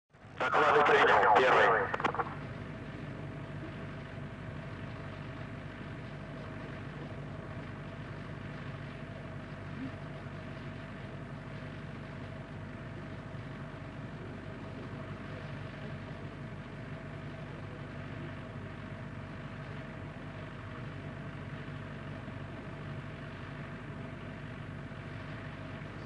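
A brief voice call in the first two seconds, then a steady hum with a faint hiss: launch-pad ambience on the live feed, with the fueled rocket waiting on the pad.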